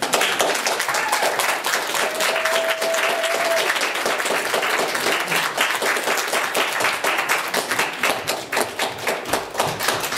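Audience applauding, starting as a song ends and thinning out toward the end into scattered claps.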